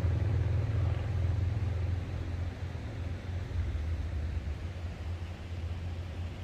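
Low engine rumble of a motorcycle passing on the road, fading over the first two or three seconds and then going on lower and steady.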